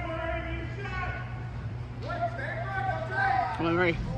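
People's voices calling and shouting in a large indoor arena, with a sharp rising shout near the end, over a steady low hum.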